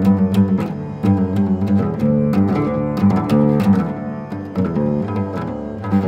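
Nylon-string flamenco guitar playing a flowing line of quick plucked notes over low notes held underneath.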